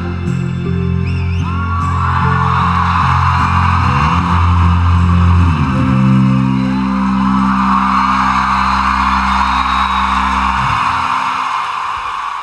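Live rock band's final sustained chords on guitar and bass ringing out under a crowd cheering; the band stops about eleven seconds in and the crowd noise fades away.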